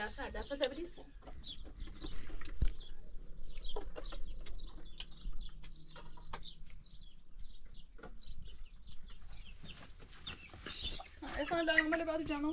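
Domestic hen clucking, with small bird chirps and short clicks around it; a louder drawn-out hen call comes near the end.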